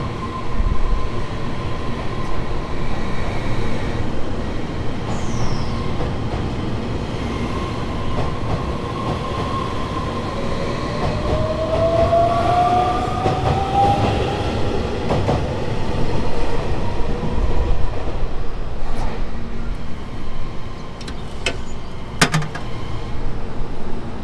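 Electric passenger train running along the platform, a steady rumble with a motor whine that rises in pitch about halfway through as the train gathers speed. A few sharp clicks come near the end.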